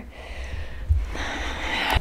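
A person's breath: a long, noisy exhale fills the second half, after a soft low thump about a second in.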